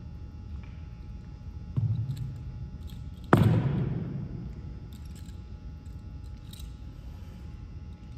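Two knocks on a wooden gym floor from a drill cadet's facing movement with a rifle: a moderate one about two seconds in, then a sharp, much louder one a second and a half later that echoes through the hall.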